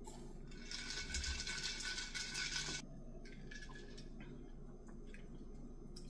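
Liquid drink-enhancer drops squirted from a squeeze bottle into a glass jar of sparkling water and ice. The carbonated water gives a faint fizzing hiss for about two seconds.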